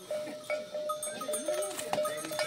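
A train of pack yaks passing on a road, with the steady ringing of their bells and a short low call near the middle.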